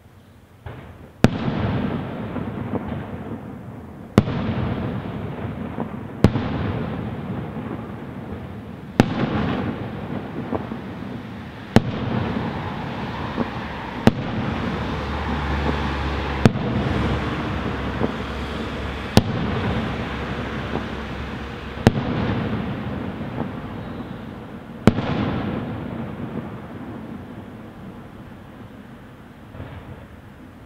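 Aerial firework shells bursting: about ten sharp bangs, one every two to three seconds, each followed by a long echoing tail, and the sound fades away near the end.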